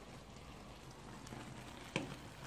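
Faint, even sizzling and bubbling of a creamy mushroom sauce simmering in a frying pan on a gas hob, with a single short click near the end.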